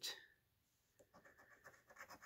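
Faint scratching of a coin across the coating of a scratch-off lottery ticket: a quick run of light, short scrapes starting about a second in.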